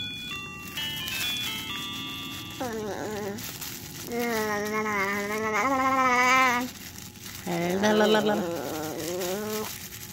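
A short electronic tune of beeping notes plays, then a voice makes three long, wavering drawn-out vowel sounds while a plastic bag crinkles.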